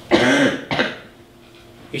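A man coughing to clear his throat: two short bursts about half a second apart, the first longer, as loud as the nearby speech.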